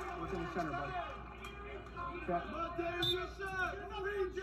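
Indistinct voices and chatter in an arena: people calling out around a wrestling mat during a break in play.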